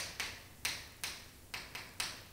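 Chalk writing on a chalkboard: a run of sharp taps and short scrapes as each stroke of the symbols is made, about six or seven in two seconds at an uneven pace.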